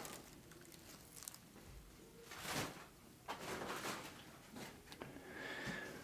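Faint handling sounds of a collapsible black mesh item being twisted and folded by hand: a few soft rustles and light knocks, the loudest about two and a half seconds in.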